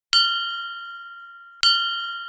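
A small bell struck twice, about one and a half seconds apart. Each strike rings on with several clear, high tones that fade slowly.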